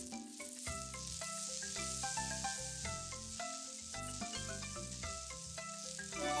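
Rolling sound effect of a marble running down a plastic marble-run track: a steady hiss, over light background music of short plucked notes.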